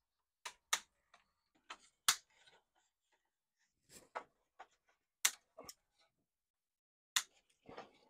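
Dry river-cane pergola being pulled apart by hand: an irregular run of sharp clicks and snaps of the canes and their fastenings, with the loudest about two, five and seven seconds in.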